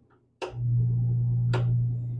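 A wall toggle switch clicks on and the dry kiln's circulation fans start up with a loud, steady low hum. A second click comes about a second later.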